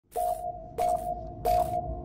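Intro sound effect: three electronic tones, each struck with a short burst of hiss and held at one steady pitch, about two-thirds of a second apart.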